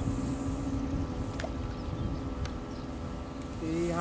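Steady buzzing hum of a small remote-control bait boat's electric motor running out across the water, over a background wash of wind and water. Two sharp ticks come about a second and a half and two and a half seconds in.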